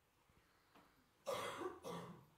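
A person coughs, a short double cough about a second and a quarter in.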